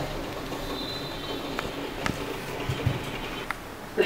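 Countertop electric oven running with a low steady hum and a few faint clicks, its bottom heating element just switched on.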